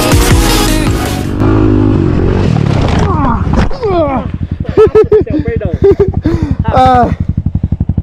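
Background music cuts off about a second in. A dirt bike's single-cylinder engine then winds down as the bike goes down in a crash and is left idling, with a rapid, even thudding of about ten beats a second. Shouted voices come over the idle in the second half.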